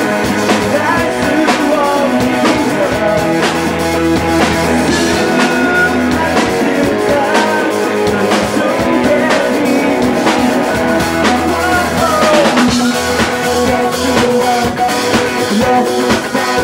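Live rock band playing loud: electric guitar through Marshall amplifiers over a steady drum-kit beat.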